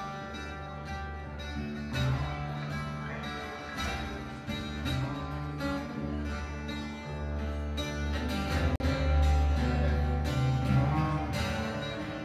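Live band music in an instrumental passage: a strummed twelve-string acoustic guitar over deep bass guitar notes and drums. The sound cuts out for an instant about nine seconds in.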